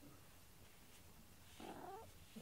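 Black cat purring faintly, with a short meow about one and a half seconds in.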